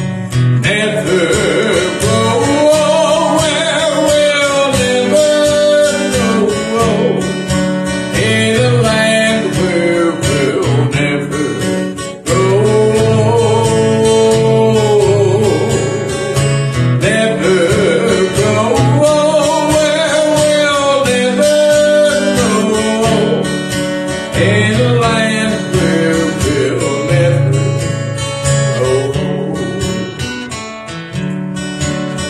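A man singing a country gospel hymn, accompanying himself on a strummed acoustic guitar.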